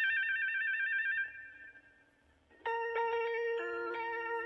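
Page-turn signal from the Talking Big Bird toy's read-along cassette: a fast, warbling electronic trill lasting about a second. After a short near-silent gap, sustained musical notes start about two and a half seconds in.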